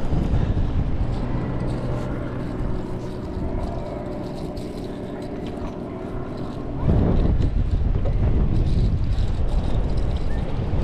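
Spinning reel cranked steadily, a whirring hum, as a small Spanish mackerel is reeled in. About seven seconds in the whir stops as the fish is swung up onto the pier, and wind buffets the microphone.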